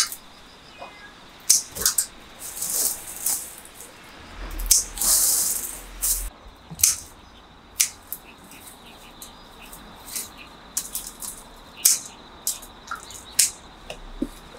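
Irregular sharp snips and clicks of garden shears cutting climbing vines, with bursts of rustling leaves and twigs as the stems are pulled and handled.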